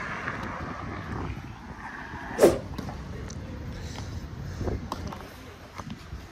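Steady low outdoor rumble, with one short, loud, sharp sound about two and a half seconds in and a fainter one near five seconds.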